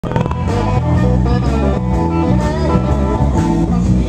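A live blues band playing, with electric guitar over a bass line.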